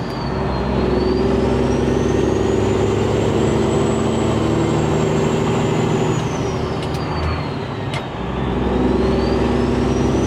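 Peterbilt 389 semi-truck's diesel engine pulling under throttle with a high turbo whistle over road noise. About seven seconds in the engine note and whistle fall away briefly, then both come back and the whistle climbs again.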